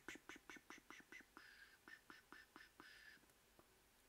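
Faint computer keyboard clicks, about five a second, thinning out and stopping after about three seconds, over near silence.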